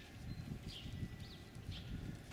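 Faint outdoor street ambience: low, irregular rustling and knocking, with two short, faint high chirps about a second apart.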